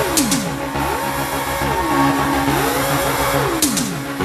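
Electronic dance track with a synth sound that slides down and up in pitch over and over, like a revving engine, over a pulsing low beat. Two short, sharp high swishes cut in, one just after the start and one near the end.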